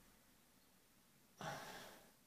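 A man's audible sigh: one breathy exhale about one and a half seconds in that fades over half a second, with near silence before it.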